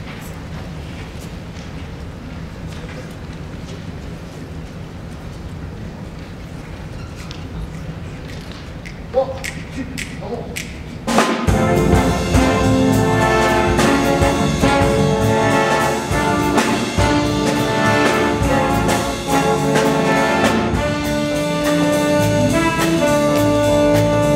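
Jazz big band: about eleven seconds of quiet, low sound with faint ticks, then the full band comes in suddenly and loudly, the horn sections playing sustained chords over bass and drums.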